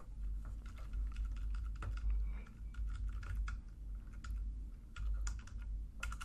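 Computer keyboard typing: a run of irregular key clicks, over a low steady hum.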